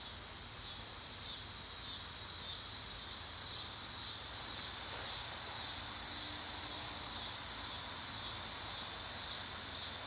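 Outdoor insect chorus: a steady high-pitched trill that pulses evenly about twice a second, slowly growing louder.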